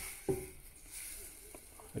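Raw chicken wings being laid onto the preheated air fryer's hot basket grate: a faint hiss with a few light handling ticks, after a brief murmur from a man's voice near the start.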